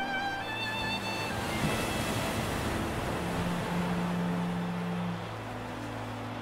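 Sea surf washing in under orchestral strings. A violin melody fades out in the first second or so, a wave swells and breaks about two seconds in, and low held string notes carry on beneath.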